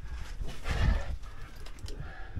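Scuffing movement noise with a low rumble through the first second, then a few light knocks near the end.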